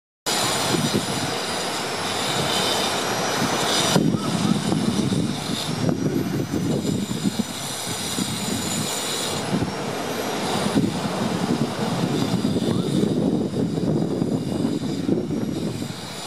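Ocean surf breaking and washing up a sandy beach: a continuous rushing roar with an irregular, gusty low rumble, shifting abruptly several times.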